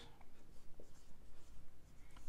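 Marker pen writing on a whiteboard: a quiet run of short, irregular strokes as letters are written out.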